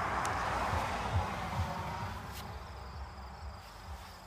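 Crickets chirping, a faint steady trill, over a rustling noise that fades away during the first two seconds.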